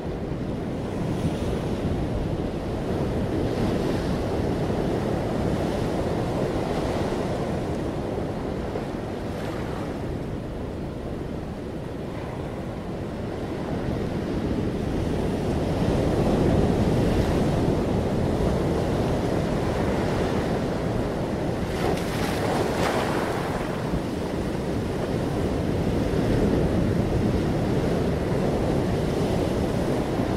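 Sea waves surging and washing against a stone breakwater and rocks, with wind buffeting the microphone. The wash swells and ebbs over several seconds, with a brief hissing splash about two-thirds of the way through.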